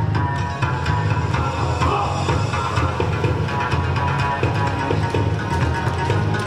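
Recorded yosakoi dance music with a steady, driving beat and heavy bass, playing loudly for a team's dance routine.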